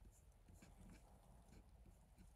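Near silence: room tone with a few faint, irregular soft ticks.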